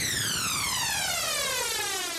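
Electronic downward sweep sound effect for an animated logo intro: a layered tone gliding steadily down in pitch over a noisy rush.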